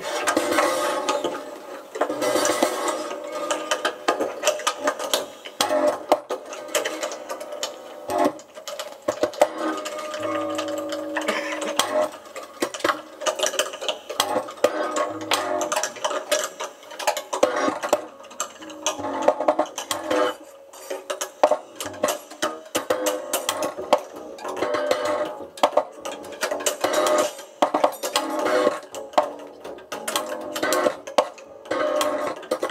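Free-improvised ensemble music made of dense clicking, clattering, ratchet-like object and electronic noises, with held tones sounding underneath, including a low tone about ten seconds in.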